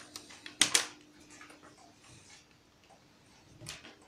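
Thin speaker wires being handled on a wooden desk: two sharp clicks about half a second in, light rustling, and another click near the end.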